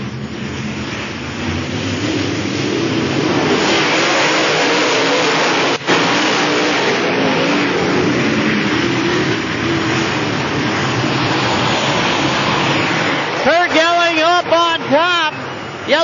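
A pack of dirt late model race cars with V8 engines running hard at speed together, a loud, continuous, dense engine noise whose pitch wavers as the cars lift and get back on the throttle. A man's voice comes in over it near the end.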